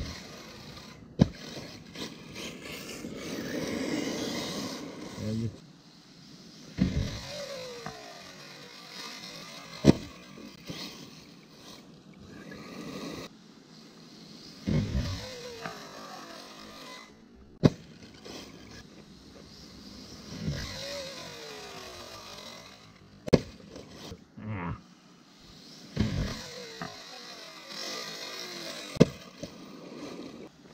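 Arrma Typhon 6S electric RC buggy with a 2250kv brushless motor making repeated runs: the motor whine falls in pitch as it slows, and the tyres scrabble on gravel and grass. Five sharp knocks, the loudest sounds, come as it lands from ramp jumps.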